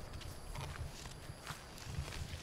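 Footsteps through grass and undergrowth: faint, irregular low thuds with a couple of light snaps.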